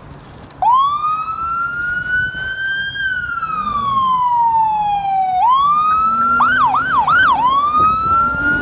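Fire truck's electronic siren coming on under a second in with a wail: the pitch rises, falls slowly, then rises again. Near the end it switches briefly to a yelp, three quick up-and-down sweeps, before climbing back into the wail.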